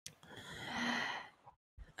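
A person's sigh: one soft, breathy exhale lasting about a second, with a faint touch of voice in the middle.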